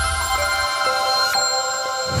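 NewsX channel ident jingle: bright, sustained electronic chime tones ringing together over a low boom that fades out about two-thirds of a second in.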